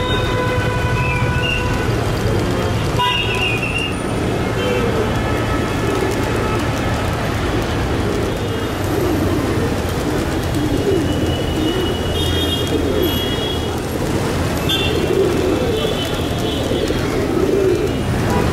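A flock of feral rock pigeons cooing over a steady traffic rumble, with vehicle horns sounding near the start and again twice in the second half.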